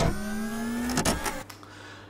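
Electronic sound effect from an embedded animation: a pitched tone rising slightly for about a second, ending in a short sharp hit, followed by a faint tail.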